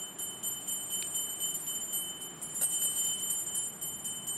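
Puja hand bell rung continuously: a steady high ringing tone, struck about four times a second.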